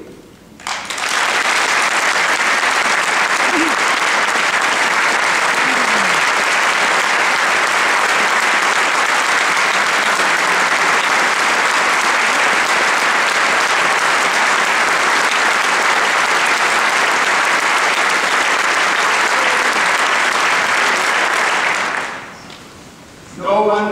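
Long, steady applause from a large audience clapping, starting about a second in, holding evenly for some twenty seconds and dying away just before the end.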